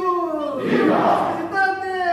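Congregation shouting "Viva!" together in repeated calls, the many voices falling in pitch on each call.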